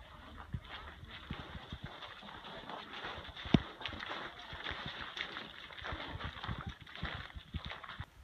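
Footsteps of a group of people walking on packed snow, an irregular run of crunching steps, with one sharp knock about three and a half seconds in.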